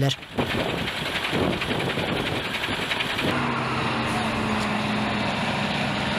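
Truck engine idling close by with a steady, evenly pulsing run; about three seconds in the sound changes to a steadier engine drone with a low hum.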